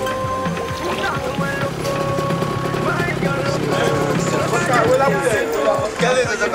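Film soundtrack music: long held synth notes over a low bass drone, with wavering voices coming in over the second half.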